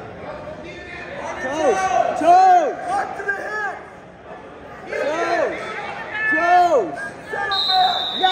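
Coaches and spectators shouting in a gym, loud drawn-out calls in two spells with a lull in between, and a short high whistle near the end.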